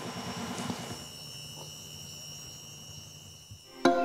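Steady high-pitched insect chirring over a faint hiss of night ambience; just before the end, music with plucked notes comes in.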